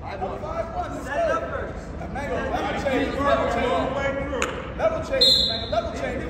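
A referee's whistle gives one short blast near the end, starting the wrestling bout. Voices talk over it in an echoing gymnasium, and there is one sharp knock a little before the whistle.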